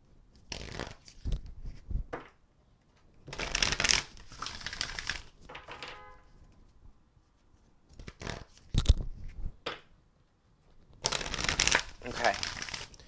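A deck of oracle cards being shuffled by hand in about five short bursts of riffling and slapping, with brief pauses in between.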